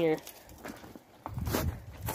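Footsteps on mucky, thawing ground, starting about a second in.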